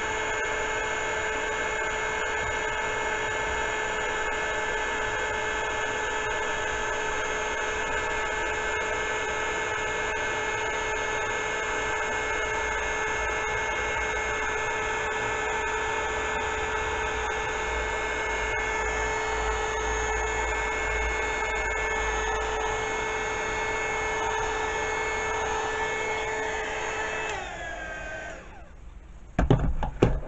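Embossing heat gun running steadily, a motor whine over rushing air, melting gold embossing powder on a stamped card. Near the end it is switched off and its pitch falls as the fan spins down, followed by a couple of sharp knocks.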